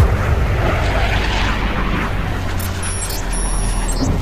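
Fighter jet flying past: a rush of jet engine noise over a deep rumble that comes in suddenly, swells about a second and a half in, and thins toward the end.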